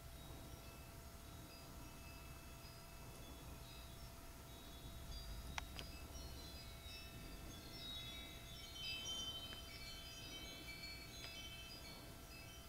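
Faint scattered short high electronic beeps or chimes, growing busier in the second half, over a steady hum and hiss, with a single sharp click about halfway through.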